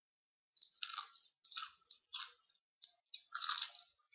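Close-miked crunching and chewing of crisp food, coming in a string of short crunchy bites that start about half a second in, with the longest and loudest crunch near the end.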